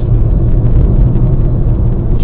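Steady low rumble of a car driving: engine and road noise heard from inside the cabin through a dashcam microphone.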